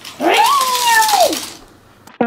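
A young child's high-pitched drawn-out squeal, rising quickly at first and then slowly falling in pitch, lasting about a second.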